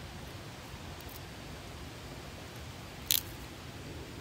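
A stick being worked by hand for firewood, with one short, sharp crack from the wood about three seconds in. Steady wind noise runs underneath.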